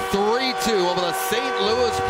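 Arena sound after the final horn: a sustained chord of steady tones, with a voice-like line gliding up and down over it, as of music playing over the arena speakers.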